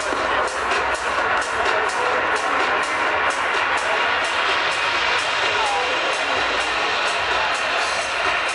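Minimal techno DJ set playing over a club sound system, heard from inside the crowd, with a steady high tick about twice a second.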